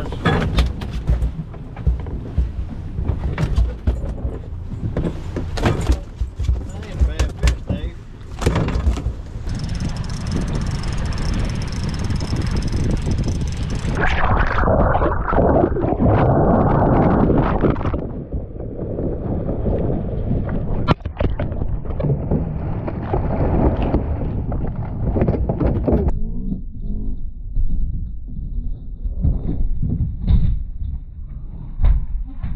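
Wind and sea noise on an action camera aboard an offshore fishing boat, with a string of sharp knocks and thumps through the first several seconds, then a louder rush of noise about halfway through.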